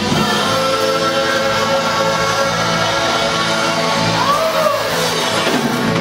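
Live church praise band with singers and keyboard holding a long sustained chord, which dies away near the end; a short sliding note is heard about four seconds in.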